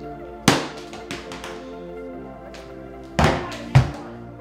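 Background music, over which a tennis ball thuds on a hardwood floor: one sharp hit about half a second in, followed by a few smaller bounces, then two louder thuds near the end.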